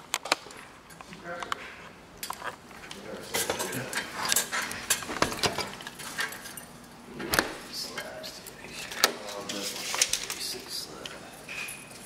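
A scattered series of light clicks and knocks from objects being handled, under low, indistinct talk.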